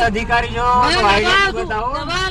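Loud men's voices talking over one another at close range, heard from inside a car, over a steady low rumble of street traffic.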